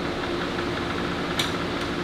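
A steady mechanical hum of several low even tones, like a motor or engine running, with a single sharp click about one and a half seconds in.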